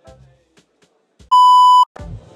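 A single electronic bleep sound effect: a steady, loud, pure tone lasting about half a second, starting a little past a second in and cutting off sharply.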